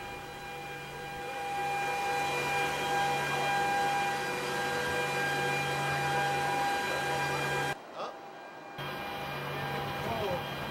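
Steady cabin noise of a jet aircraft in flight: a constant rushing hum with a steady whine on top. It drops away for about a second near the eight-second mark, then comes back.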